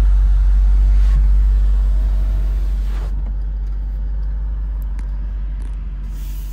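BMW M8 Competition's twin-turbo 4.4-litre V8 idling, heard from inside the cabin as a deep, steady rumble that grows gradually quieter from about two seconds in.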